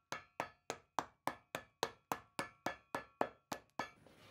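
A steady run of about fifteen sharp taps at an even pace, about three and a half a second, each ringing briefly.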